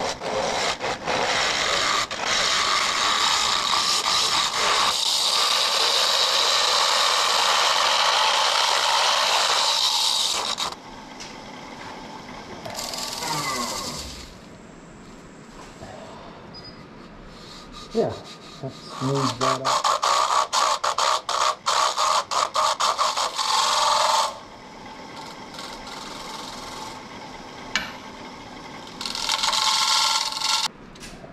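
A carbide turning tool cutting inside a spinning wooden box on a wood lathe: a steady scraping hiss as the cracked wood comes off as dust rather than shavings. There is one long pass for about the first ten seconds, a choppier pass from about 18 to 24 seconds, and a short one near the end.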